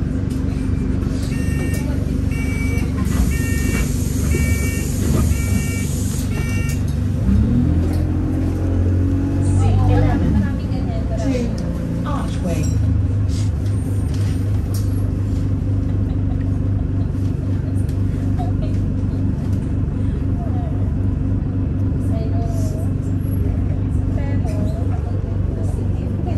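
Inside a city bus: a steady engine drone with road noise, a run of about seven short beeps with a hiss of air in the first few seconds, then the engine rising in pitch as the bus speeds up before it settles to steady running.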